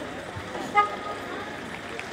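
A single short, pitched, horn-like toot about a second in, over low steady background noise.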